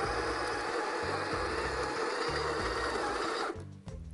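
Breville Smart Grinder Pro conical burr coffee grinder running, grinding beans straight into a portafilter with a steady whirr. It cuts off suddenly about three and a half seconds in, paused partway through the dose.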